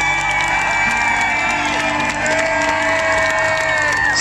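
Live rock band playing, amplified through the PA, with the crowd cheering and shouting over it.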